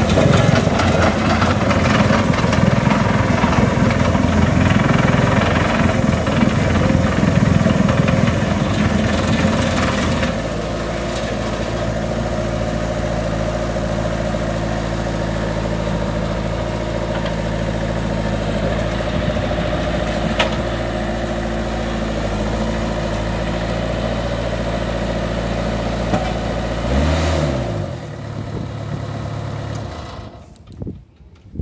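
Engine of a 1996 Rammax RW3000SPT padfoot roller running loud and rough under working revs for about ten seconds, then settling to a steadier, lower run. Near the end the engine note dips and the machine is shut down.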